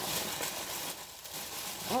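Packaging rustling and crinkling as a box is opened and its contents are handled, a dense continuous rustle for most of the two seconds.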